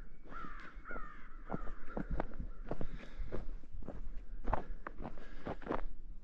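Footsteps crunching on packed snow and ice, with a bird giving three short calls in the first second and a half.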